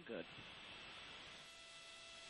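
A spoken word ends, then near silence: a faint, even hiss with a few thin steady hum tones.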